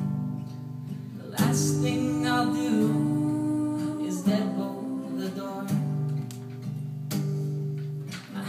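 Two acoustic guitars strumming a slow song, with a heavy strum about every three seconds, while a woman sings over them.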